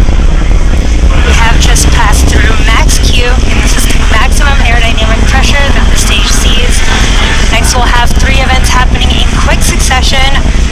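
Falcon 9 first stage's nine Merlin 1D engines heard from the ground during ascent: a loud, steady deep rumble with crackling through it, and voices over it.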